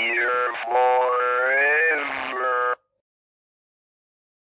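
A loud, buzzy, distorted wail whose pitch sweeps up and falls back, cut off abruptly a little under three seconds in, leaving dead silence.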